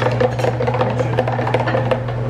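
A metal serving spoon clicking and scraping in a glass baking dish as rice is spooned out onto plates: a quick, uneven run of small clicks over a steady low hum.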